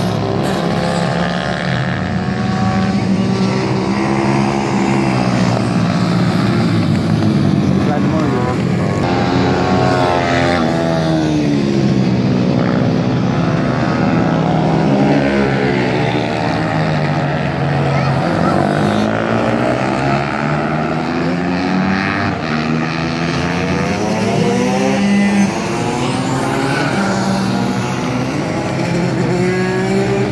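Several small racing motorcycles, a Moriwaki 250 MD among them, running on track: overlapping engine notes rise and fall as the bikes accelerate, shift and brake through the corners.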